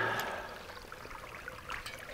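Faint trickle of shallow water, with a few light clicks of sticks and debris being handled near the end.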